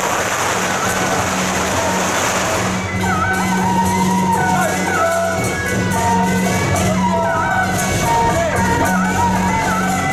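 Traditional Taiwanese temple-procession band music: a melody with sliding notes over a steady low drone. A loud hissing wash runs through the first three seconds or so.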